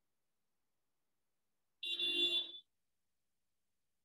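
A single short buzzing electronic tone, under a second long, about two seconds in, with silence around it.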